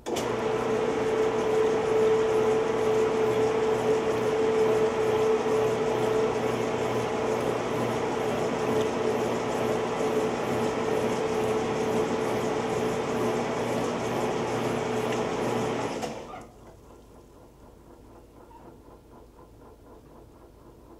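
Montgomery Ward FFT-6589-80B top-load washer agitating a full tub of water and clothes: a loud, steady motor and transmission hum with a quick even pulse from the agitator strokes and water sloshing. It starts abruptly and stops about 16 seconds in.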